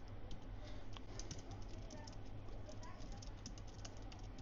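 Computer keyboard being typed on: a quick run of light key clicks, thickest from about a second in, over a low steady hum.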